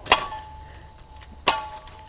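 Machete chopping into pine saplings with angled strokes: two sharp chops about a second and a half apart, each followed by a brief metallic ring from the blade.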